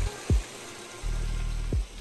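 Outro background music: a low bass drone with deep bass-drum hits about every second and a half.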